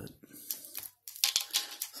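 Clicks from a Ghost Rider action figure's spring-loaded arm and the rattle of its small toy chain as the arm whips it out: a few clicks early, then a quick run of clicking and rattling from about a second in.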